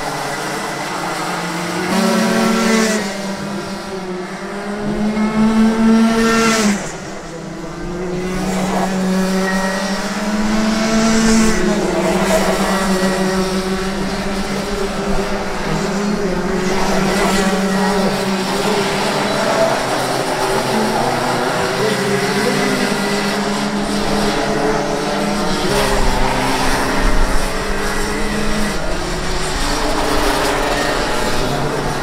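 Several Rotax 125 two-stroke kart engines running at race speed, their notes rising and falling in pitch as the karts accelerate and lift off through the corners. The level drops suddenly about seven seconds in, then builds again.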